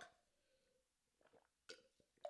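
Near silence, broken by a couple of faint short sounds of a man swallowing a drink from a plastic cup, about a second and a half in.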